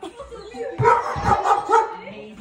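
A dog barking excitedly, a quick run of short barks starting about a second in, mixed with people's voices.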